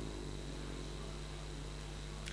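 Room tone: a steady low hum with a faint hiss and no distinct event.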